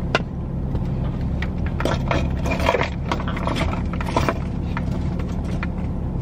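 Steady low hum of a car's engine idling, heard from inside the cabin, with scattered light clicks and brief rustling of people moving in their seats.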